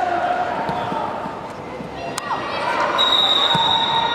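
Players and spectators shouting at an outdoor youth football match, with one sharp thud of a football being kicked about two seconds in. A thin high steady tone starts about three seconds in.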